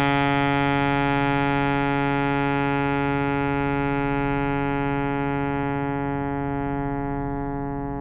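Alto saxophone holding one long, steady low note, the written low B-flat under a fermata, rich in overtones and slowly fading toward the end.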